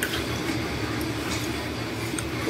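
Steady room noise: a continuous low hum under an even hiss, with a couple of tiny clicks.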